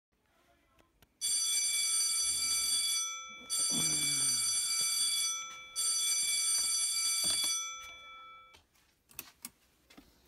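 Digital bedside alarm clock going off: a shrill electronic alarm tone sounding in three long bursts of about two seconds each, with short pauses between them.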